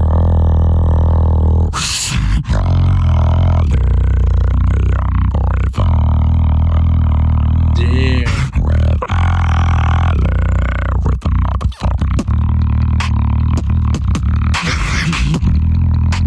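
Beatboxing into a handheld microphone: a deep, sustained bass line with sharp snare- and hi-hat-like hits over it.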